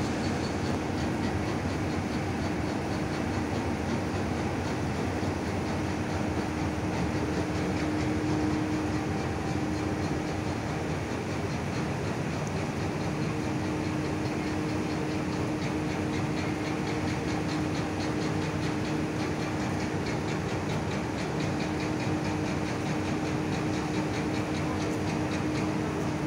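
Steady mechanical hum and rumble with a held low tone, unchanging throughout.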